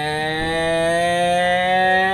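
A man's voice holding one long drawn-out note, its pitch creeping slowly upward.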